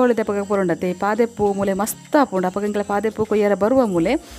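A woman talking in Tulu, with a steady high insect buzz, like crickets, in the background.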